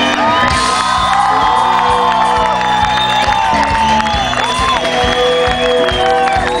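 Live rock band playing loudly, led by an electric guitar with gliding, bent notes over a steady beat, while the crowd cheers and whoops.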